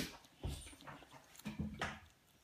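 A toddler's small mouth and breath sounds while eating cereal: a quick breath at the start, a soft knock about half a second in, and a short hum with his mouth full near the end, just before an "uh".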